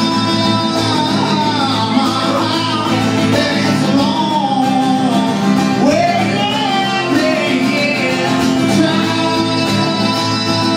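A man singing while strumming an acoustic guitar, a live solo performance heard through a PA in a small club.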